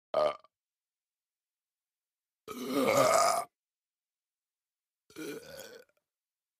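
A man burping three times: a brief burp right at the start, a longer and loudest one of about a second in the middle, and a quieter one near the end.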